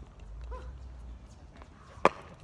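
A brief, faint yelp about half a second in, over a low rumble.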